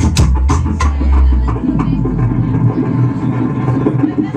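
Live music played on a Magic Pipe (a homemade steel-pipe string-and-trigger instrument) and a handsaw. A deep bass and sharp percussive hits sound in the first second; the bass dies away after about a second and a half, leaving a busy, lower-pitched texture.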